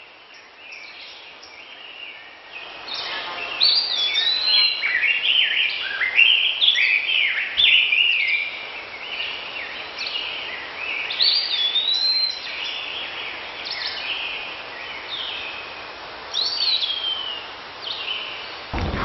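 Songbirds singing, with many quick chirps and whistled notes overlapping over a faint outdoor hiss, building up about two and a half seconds in.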